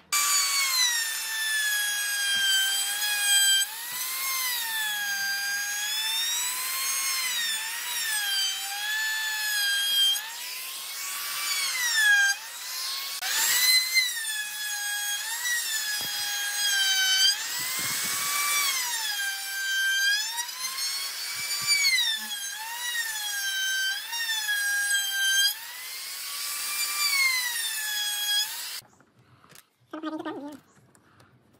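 Handheld trim router cutting wood: a high motor whine whose pitch repeatedly sags and recovers as the bit bites into the wood. It cuts off abruptly near the end.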